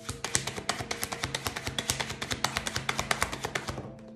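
Tarot deck being shuffled by hand: a rapid, steady patter of card clicks, about ten a second, stopping just before the end, over soft background music.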